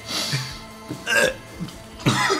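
Two short, breathy bursts of a man's laughter about a second apart, held back in the throat.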